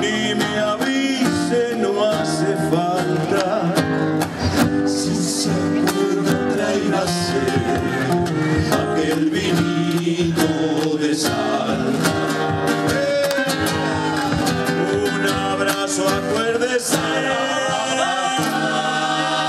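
A male vocal group singing to two strummed and picked acoustic guitars, the music steady and continuous.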